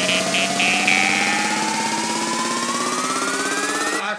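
House-music build-up played on jaw harps: a buzzing drone holds steady while a single tone rises smoothly in pitch throughout, climbing toward the drop.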